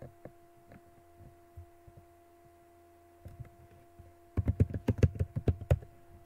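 Typing on a computer keyboard: a quick burst of a dozen or so keystrokes about four and a half seconds in, after a few scattered clicks, over a steady hum.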